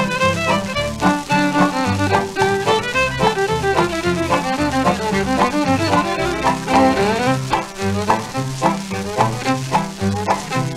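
Instrumental break of a 1946 country-western song played from a 78 rpm record: a fiddle carries the melody over a steady stepping bass and rhythm strumming, with no singing.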